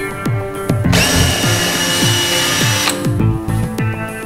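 Makita cordless drill boring a hole into a wall, running for about two seconds starting about a second in, with a whine over the grinding of the bit. Background music with a steady beat plays throughout.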